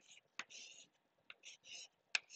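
Faint chalk writing on a blackboard: light taps as the chalk meets the board and short scratchy strokes in between, a few of them as a hexagon is drawn.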